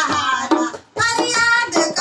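Two women singing a Garhwali devotional bhajan to Vishnu, with dholak (two-headed hand drum) strokes beneath; the singing breaks briefly just before the middle.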